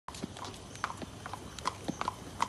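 A horse walking on pavement: hooves clip-clopping, several light strikes a second at an uneven pace.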